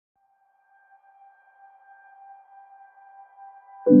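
Opening of a calm piano track: a soft, steady high tone fades in, and just before the end a low piano chord is struck and rings on.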